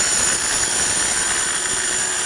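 Rotorazer compact circular saw running and cutting through steel electrical conduit: a steady motor whine that drops slightly in pitch under the load of the cut, with a high, steady metallic ringing from the blade biting into the steel.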